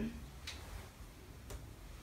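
Quiet room tone with a low hum and two faint ticks about a second apart.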